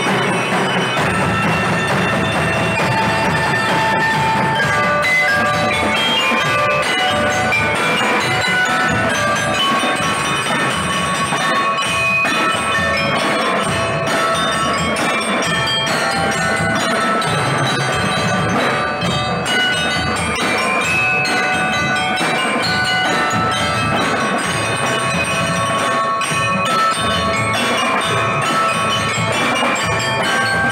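A percussion ensemble playing: mallet keyboards ring out a melody over snare drums, multi-tenor drums and bass drums.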